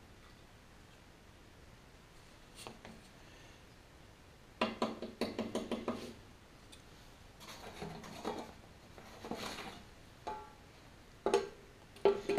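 Wooden stir stick clattering against a metal paint can while paint is mixed: a quick run of taps, then looser scraping and clinks, and a single sharp click near the end as the lid goes back on the can.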